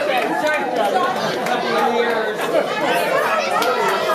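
Chatter of many people talking at once, with several voices overlapping and occasional sharp clicks.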